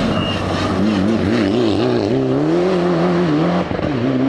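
Mitsubishi Lancer Evolution rally car's turbocharged four-cylinder engine driving past under changing throttle through a bend: the engine note wavers up and down, then rises and holds before dropping near the end as the car pulls away.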